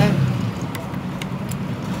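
A few light metallic clicks from hands working on the under-bed mechanism of a sewing machine, over a steady background hum.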